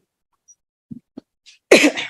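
One short, loud cough near the end, after a near-silent pause broken only by a couple of faint soft taps.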